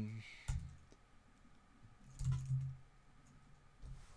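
A few scattered keystrokes and clicks on a computer keyboard, typing into a browser address bar.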